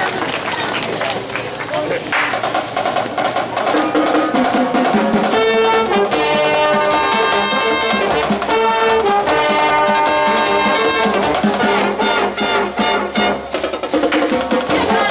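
Voices and crowd noise, then about five seconds in a high school brass band starts playing: held brass chords from trumpets and sousaphone with woodwinds, and drums coming in near the end.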